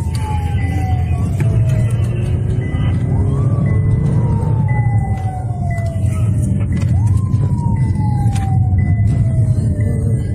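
Police car siren wailing. Each cycle rises quickly and then falls slowly over about three and a half seconds, and it is heard from inside a moving car over steady engine and road rumble.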